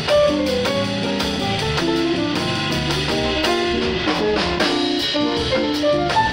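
Live band playing a jazz instrumental: keyboard and drum kit, with a quick run of short melody notes over held chords.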